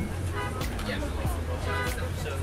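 Cabin sound of a moving coach bus: a steady low engine and road rumble, with passengers talking and music playing over it.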